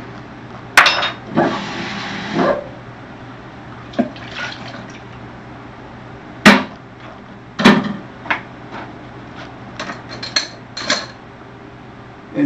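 Kitchen counter clatter: water poured briefly into a plastic bowl about a second and a half in, amid scattered clicks and knocks of containers and utensils, with two louder knocks about six and a half and seven and a half seconds in.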